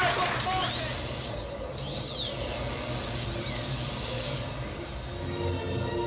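Audience applause dying away in the first moment, then room noise with a few short high sweeping sounds. Music comes in near the end.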